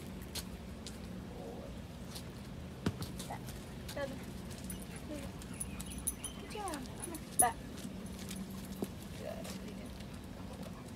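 Dogs' claws clicking on a concrete patio as several dogs move about, with a few short falling whines about six to seven seconds in. A sharp knock about seven and a half seconds in is the loudest sound.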